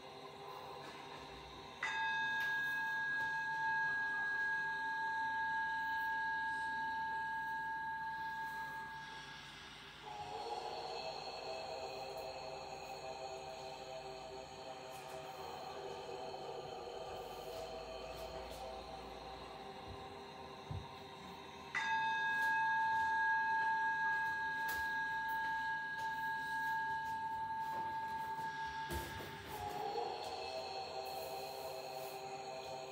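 Ambient meditation-style music: a bed of sustained drone tones, with a clear bell-like tone struck twice, about twenty seconds apart, each time ringing steadily for about eight seconds.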